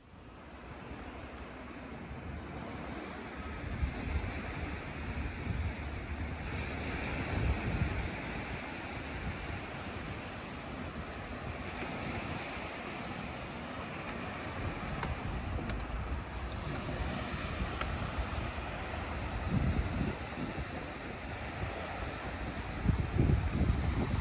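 Wind buffeting the microphone over a steady wash of small waves breaking on a shallow beach. Low gusts rumble at intervals, strongest near the end.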